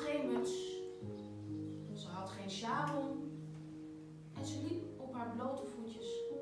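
Electronic keyboard playing slow, sustained chords, with a woman's voice speaking over it in three short phrases.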